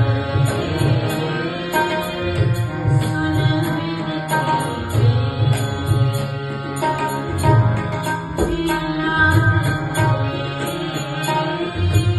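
A woman singing a Sikh kirtan hymn in a devotional style into a microphone, over sustained instrumental accompaniment and irregular low drum strokes.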